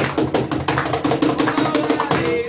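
Cajón played with the hands in a quick run of strokes over a strummed acoustic guitar, with no singing.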